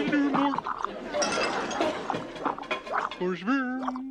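Wet gurgling and bubbling, like coffee percolating in a glass vacuum coffee maker, runs irregularly for a couple of seconds after a burst of mock-Swedish chatter. A voice says "Oh" near the end.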